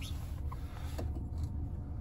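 BMW 220i Gran Coupe's turbocharged four-cylinder petrol engine idling, a low steady hum inside the cabin, with a faint click about half a second in.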